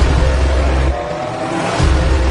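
Cinematic intro sound design: a sharp hit with a deep bass rumble, a rising tone about a second in, then another deep bass hit near the end.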